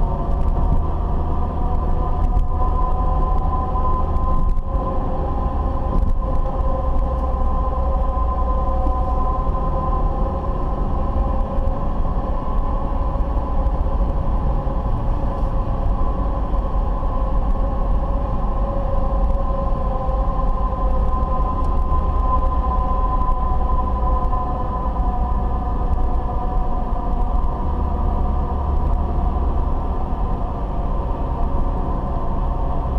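Road and engine noise of a moving car heard from inside the cabin: a steady low rumble with a few steady humming tones that drift slightly in pitch.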